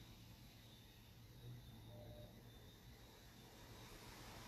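Near silence: faint room tone and microphone hiss with a low hum.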